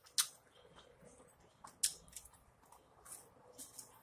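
A person chewing lamb birria, picked up close, with sharp mouth clicks about a fifth of a second in and just before two seconds, and softer ones later.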